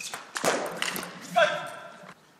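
Sounds of a table tennis rally: a quick series of sharp knocks with a rush of noise, then one loud held shout about one and a half seconds in.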